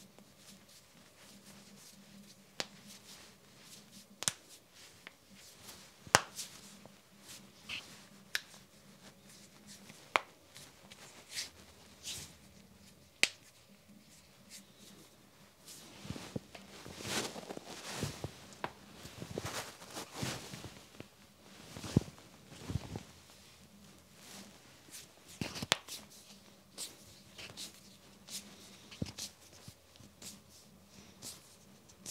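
Knuckles cracking close up on a clip-on lapel microphone: a string of sharp, irregular pops, some very loud, with rustling near the microphone and a busier run of cracks about halfway through.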